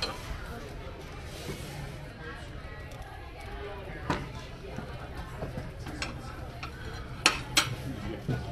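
Plates, a platter and metal cutlery being moved about on a table, with scattered clinks and two sharp clinks close together near the end, over a low murmur of other diners' voices.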